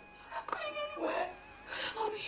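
A woman crying: a high, wavering sob followed by ragged, breathy gasps.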